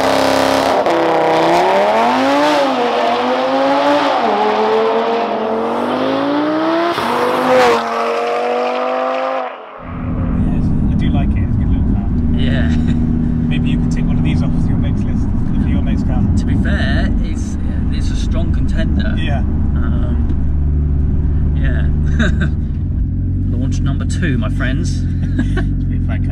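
A Stage 3 tuned Audi RS3 saloon's turbocharged five-cylinder engine accelerating hard. Its pitch climbs and drops back three or four times as it shifts up through the gears, with a short sharp burst near the end of the run. It then cuts off suddenly to a steady low engine drone heard inside the cabin, with laughter over it.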